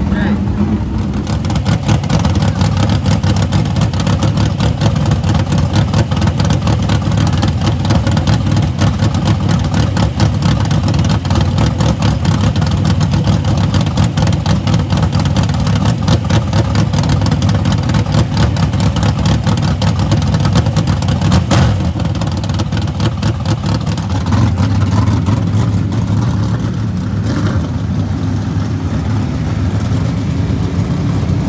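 Dirt modified race car's V8 engine running at idle close by, a loud, rapid pulsing beat. After about 24 seconds the sound changes as other race cars run on the track.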